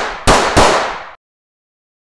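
Logo sting sound effect: a run of sharp, noisy hits, two of them about a third of a second apart, each fading quickly before the sound cuts off suddenly.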